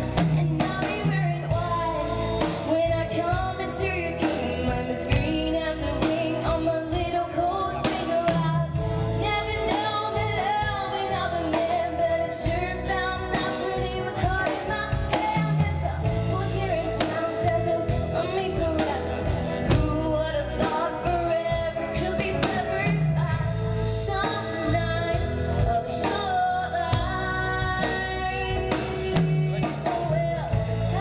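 A woman singing lead vocals into a microphone with a live band, over a steady drum beat.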